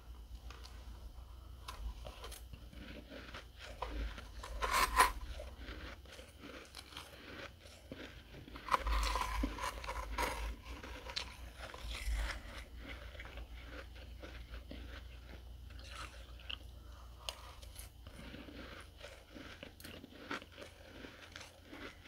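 Close-miked biting and chewing of dry, flaky freezer frost: soft, crisp crunches with the loudest about five seconds in and another run around nine to ten seconds.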